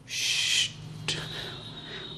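Marker writing on a whiteboard: a scratchy squeak lasting just over half a second, then a single sharp tap about a second in.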